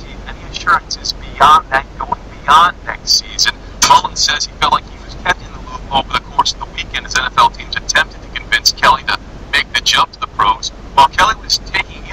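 Speech: a person talking without a break, in the quick rise and fall of news-report delivery.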